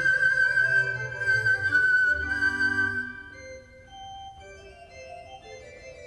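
Pan flute holding one long high note over held organ chords. About three seconds in the long note ends and the music goes much quieter, with softer notes carrying on.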